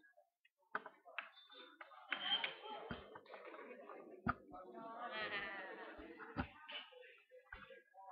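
Indoor room murmur of people settling in: faint, indistinct voices, one drawn-out voice about halfway through, and about five scattered knocks and bumps.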